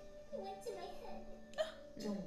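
Quiet dialogue from the anime episode's soundtrack under soft background music, with one brief, sharp vocal sound about one and a half seconds in.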